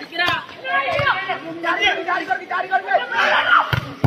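Players and onlookers shouting and chattering over a volleyball rally, with a few short thuds of the ball being struck, the clearest near the end.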